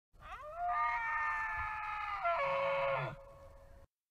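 A single long animal call with a clear pitch. It glides up, holds steady for about two seconds, steps down in pitch, and falls away about three seconds in.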